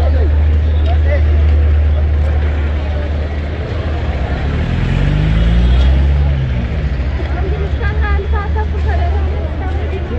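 City street traffic: a steady low rumble, with a motor vehicle's engine passing about midway, its pitch rising and then falling. People's voices are heard nearby toward the end.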